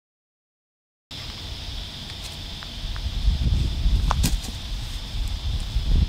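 Silence for about a second, then wind buffeting the microphone outdoors, the rumble growing stronger partway through, over a steady high-pitched drone, with a few faint clicks.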